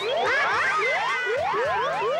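Playful cartoon sound effects over music: a quick, even series of short rising whoops, about four a second, each with a low falling thump beneath it, with a cluster of higher squeaky chirps in the first second. They accompany red blood cells loading up with oxygen.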